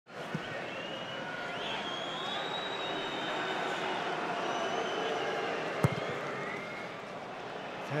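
Steady hum of a large football stadium crowd with faint whistling, and a single sharp thud about six seconds in: the goalkeeper's boot striking the ball for a long kick upfield.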